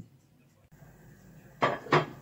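Kitchen pot and utensils clinking: a faint knock at the start, then two loud clatters in quick succession near the end.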